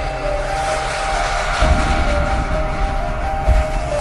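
Logo intro music: held synth chords under a rushing whoosh effect that swells in the middle, with deep bass booms at the start, about halfway through and near the end.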